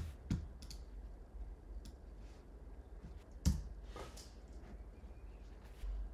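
A few scattered clicks from working a computer keyboard and mouse, the loudest about three and a half seconds in, over a faint steady low hum.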